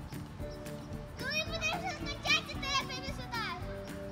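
A child's high, excited voice calling or squealing with a wavering pitch for about two seconds, starting a second in, over steady background music.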